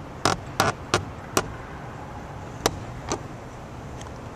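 Ice hockey sticks clacking on the puck and ice: a series of sharp knocks, several close together in the first second and a half and two more later, over a steady low hum.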